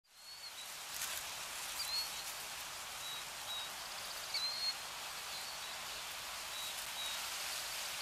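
Steady outdoor ambience, an even hiss, fading in after a sudden cut, with a few short, faint, high bird chirps scattered through it.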